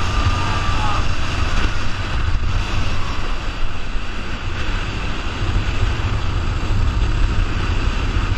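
Heavy wind buffeting on the microphone of a camera riding along at racing speed on a downhill skateboard, over the steady rush of skateboard wheels rolling on asphalt.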